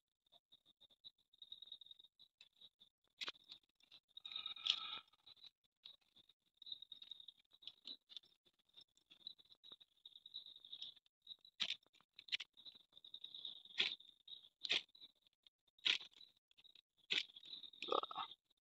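A steel striker scraped down a ferrocerium (flint) rod, about seven short sharp rasps spread through the second half, throwing sparks at damp paper and dry leaves that fail to catch. A crunchy rustle of the dry leaves and paper being handled comes about four seconds in, over a steady high insect trill.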